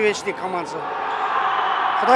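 Echoing sports-hall noise from a volleyball game, with the thuds of volleyballs being struck and bounced on the court. A man's voice trails off in the first second.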